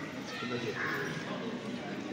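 Indistinct voices talking quietly in a large, echoing hall, with no clear words.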